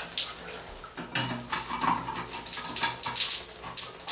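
Water from a leaking shower valve running and splashing onto the shower's tile, with small knocks as the shower handle is handled and fitted back onto the valve.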